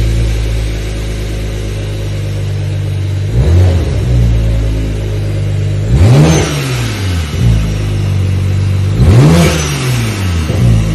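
Toyota A90 Supra's B58 turbocharged inline-six, fitted with a DOCRace top-mount Precision turbo kit with external wastegates, idling on its first start and blipped three times: a short rev about three seconds in, then two bigger revs a few seconds apart, each rising and falling back to idle with a rush of turbo and exhaust hiss.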